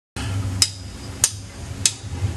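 A drummer's count-in, drumsticks clicked together: three sharp clicks at a steady tempo, a little over half a second apart, over a low steady hum.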